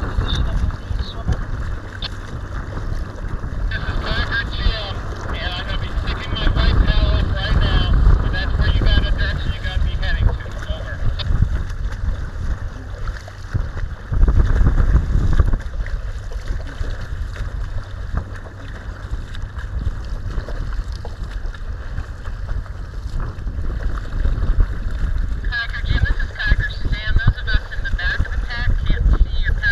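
Wind buffeting the microphone of a camera on a kayak's bow, with choppy water slapping and splashing against the hull. Brighter splashing comes in about four seconds in and again near the end.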